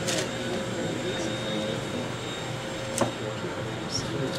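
Steady room hum with a faint held tone, and a single sharp click about three seconds in.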